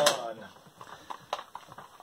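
A few light clicks of a plastic cassette case being picked up and handled, with a sharper single click about one and a half seconds in.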